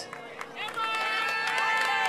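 A group of young girls cheering together in long, held high-pitched calls, starting about a second in, over a faint steady hum.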